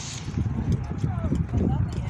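Irregular low thumps of footsteps and rumbling handling noise on a phone's microphone while walking, with faint voices in the background.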